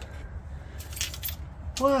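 Faint light clicks and rustles of crystal draughts pieces being handled in their packed box, clustered about a second in, then a man says "wow".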